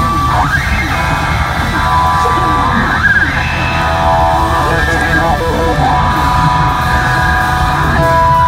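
Live blues-rock band playing: a Stratocaster-style electric guitar solos over drums and bass guitar, its notes gliding and wavering in pitch with string bends.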